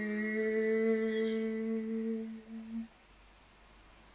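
A person humming one long, steady note, which stops a little under three seconds in, leaving faint room tone.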